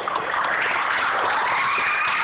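Many voices at once in a large reverberant hall, a steady mass of children's and adults' voices without clear words.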